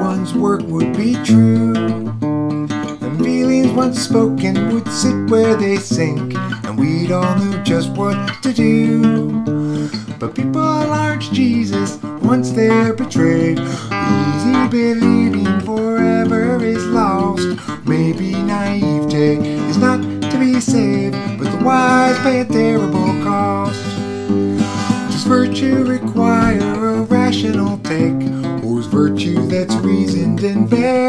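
Acoustic guitar strummed in a steady song, with a man singing over it.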